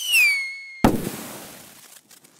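Logo sound effect in the style of a firework: a whistle that slides down in pitch and levels off, then a sudden sharp bang just under a second in that fades away over the next second.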